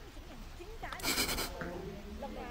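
A tabby cat gives a short, high-pitched meow about a second in while being stroked under the chin.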